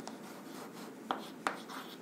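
Chalk writing on a blackboard: a scratchy rubbing with a few sharp taps where the chalk strikes the board, about a second in and again near the end.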